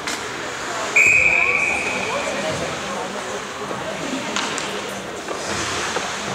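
Referee's whistle blown once about a second in: a single steady high blast lasting about a second and a half. Under it are arena chatter and a few sharp knocks of play on the ice.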